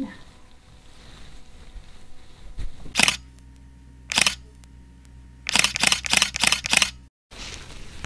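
Camera shutter clicks: one about three seconds in, another a second later, then a quick run of about six in a row.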